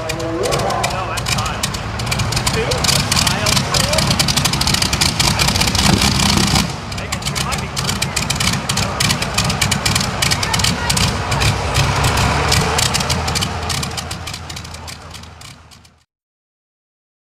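Supercharged engine of a light modified pulling tractor running loud and rough, with a brief drop in level a little past the middle, fading out near the end.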